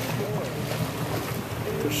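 Small boat's motor running steadily under wind and sea-water noise, with faint voices and a word spoken near the end.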